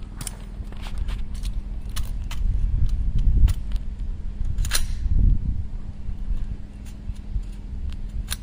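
Low rumbling wind noise on the microphone, with several faint sharp cracks scattered through it and one louder crack a little before the five-second mark.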